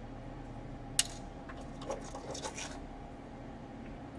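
Small hand tools and parts being handled inside an open laptop: one sharp click about a second in, then a short run of small clicks and scrapes, over a steady low hum.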